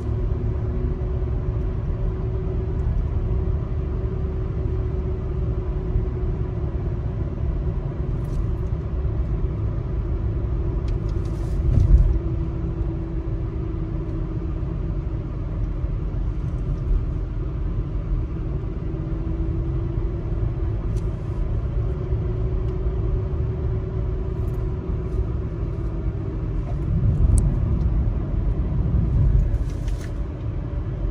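Car cabin road noise while driving: a steady low rumble of tyres and engine, with a faint hum that wavers up and down in pitch. A short thump comes about twelve seconds in, and the rumble swells louder near the end.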